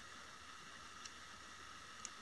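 Near silence: faint steady hiss of room tone, with one faint tick about halfway through.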